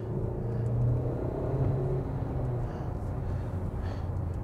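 Chery Tiggo 8 Pro's 1.6-litre turbocharged petrol engine pulling under throttle in sport mode, heard from inside the cabin as a low drone that swells about a second in and eases off toward the end.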